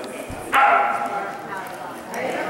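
A dog barking: one sudden, drawn-out high bark about half a second in, trailing off over the next second.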